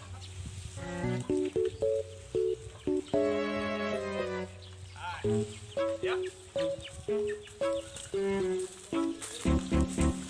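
Background music: a melody of short, distinct notes that step up and down in pitch, with one longer held note about three seconds in.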